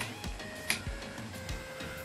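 Background music with a steady beat and held notes, with one sharp click about a third of the way in.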